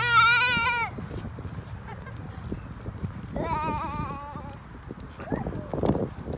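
High-pitched laughter twice, each a wavering, bleat-like sound: about a second of it at the start, and again from about three and a half seconds in.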